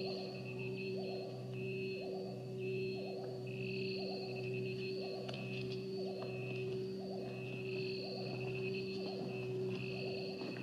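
Steady electronic drone with a soft pulse repeating about once a second and high, wavering tones above it.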